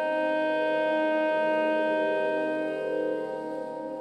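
Saxophone holding one long steady note over a sustained ambient electronic drone; the note fades near the end.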